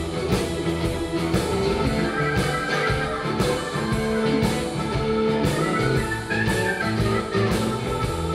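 Blues-rock recording playing back through Sonus Faber Olympica Nova 3 floorstanding loudspeakers, recorded in the room: an instrumental passage with guitar and a steady drum beat, no vocals.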